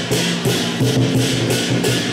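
Lion dance percussion band of big drum, clashing cymbals and gong playing a quick steady beat, with cymbal clashes about three to four times a second over ringing metal tones.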